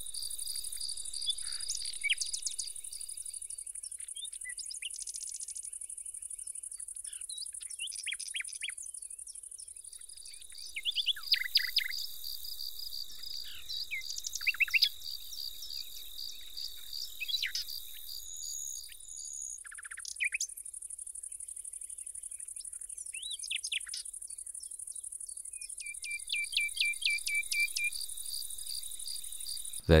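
Outdoor nature ambience: insects chirping in a steady high chorus that fades out and returns, with scattered bird chirps and calls and a short fast trill of repeated notes near the end.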